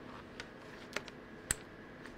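Quiet handling of a PoE injector and an RJ45 Ethernet plug being pushed into its PoE socket: a few light plastic clicks, then a sharper click about one and a half seconds in as the plug's latch locks in.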